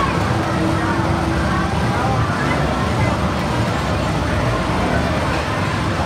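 Steady arcade din: game machines' sounds blended with crowd babble and indistinct voices.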